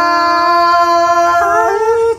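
A woman's voice holding a long sung note in a Tai giao duyên folk song, with a slight waver, stepping up in pitch about one and a half seconds in.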